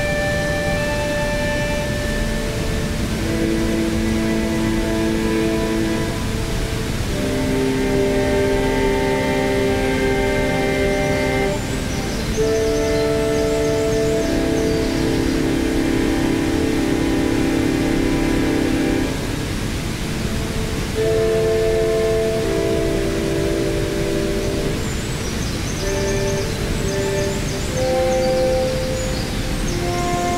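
Improvised synthesizer chords played through a small speaker, each held for a few seconds before changing, one wavering rapidly around the middle, over the steady rush of a waterfall.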